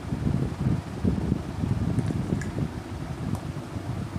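Air from a room fan buffeting the microphone: a low, uneven rumble.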